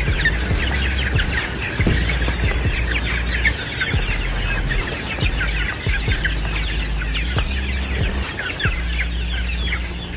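A large flock of young gamefowl chicks, about one and a half to two months old, peeping and chirping constantly as they run about, with many short high calls overlapping.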